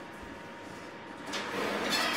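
A cake tin being handled and a wall oven door being pulled open. A quiet first second is followed by rising rustling noise with a couple of light knocks.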